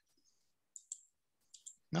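Mostly quiet, with a few faint, short clicks around the middle, followed by a brief spoken word at the very end.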